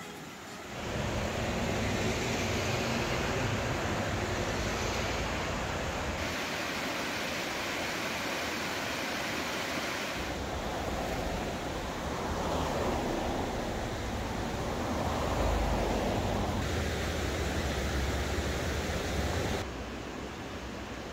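Rushing water of the Little River, a mountain stream, making a steady hiss that shifts slightly in level a few times, with some low rumble underneath.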